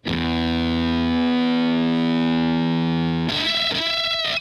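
Outro music: a distorted electric guitar chord held for about three seconds, then changing to a shorter new figure near the end.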